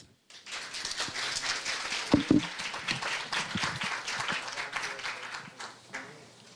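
Audience applauding: a dense, even patter of many hands clapping that starts just after the beginning and dies away near the end.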